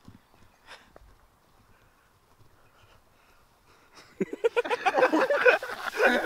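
Near quiet with a few faint rustles, then about four seconds in a sudden loud burst of several human voices yelling, without clear words.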